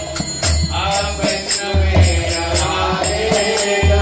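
Devotional kirtan: a voice singing a wavering melody over a steady beat of hand cymbals and deep drum strokes.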